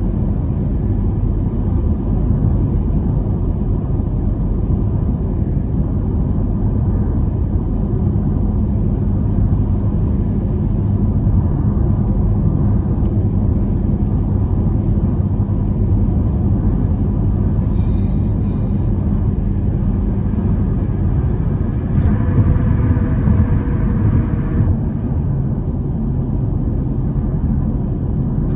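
Steady low rumble of a car's tyres and engine heard from inside the cabin while cruising at highway speed. About 22 seconds in it grows louder and hissier for a couple of seconds.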